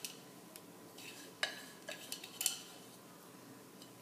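Wooden pilón (mortar) being knocked and scraped over a plastic bowl as mashed garlic is emptied out of it: a few light, sharp knocks, the loudest about one and a half and two and a half seconds in.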